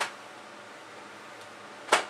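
A single sharp slap near the end, from a swung arm striking against the body, over quiet room tone.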